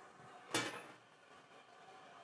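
A single short scrape or clack about half a second in, from hands handling the printer's platen and its hoop, then faint room tone.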